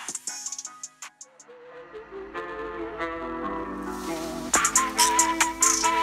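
Background music. A drum beat fades out in the first second, then a new track starts with held, wavering melody notes, and drums come back in about four and a half seconds in.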